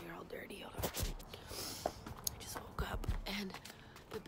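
A woman whispering close to the microphone, in short breathy phrases with small mouth clicks.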